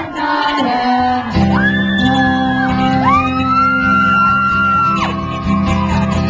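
Live acoustic song: strummed acoustic guitar under long held sung notes that slide up into pitch, with audience voices shouting and singing along.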